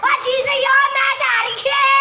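Several young boys shouting together in long, high-pitched calls, held out almost like a chant.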